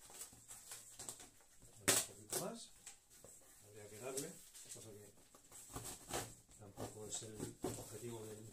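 Plastic Makedo safe-saw cutting through corrugated cardboard in short, irregular strokes, each a brief rasp, following a line pre-scored with the roller.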